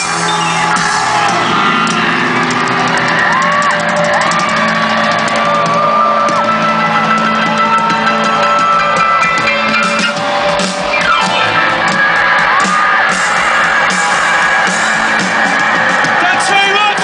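Live rock band playing loudly through an arena PA, with electric guitar, as heard from within the audience. Crowd shouting and whooping mixes in with the music.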